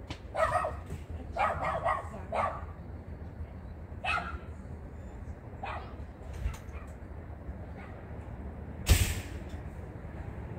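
A dog barking in short bursts: several barks in the first two and a half seconds, then single barks about four and six seconds in. A single sharp knock sounds near the end, the loudest thing in the stretch.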